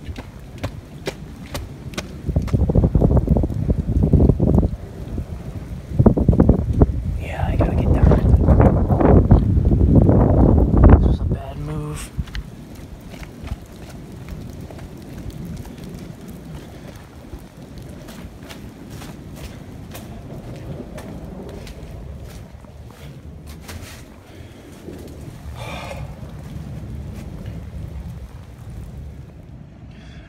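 Storm wind gusting hard across a phone microphone in two loud spells over the first eleven seconds, then dropping suddenly to a steadier hiss of rain with scattered clicks.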